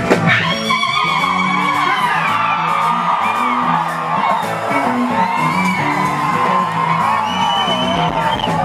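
Live band music with keyboard and a voice singing or calling out over a stepping bass line, with whoops from the crowd. A sharp knock sounds just after the start.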